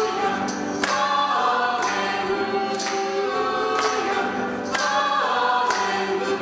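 A church choir singing a hymn with instrumental accompaniment, with a sharp, bright accent on the beat about once a second.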